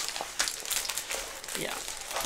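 Clear plastic film on a rolled diamond painting canvas crinkling and rustling as the canvas is unrolled by hand, in a string of short crackles.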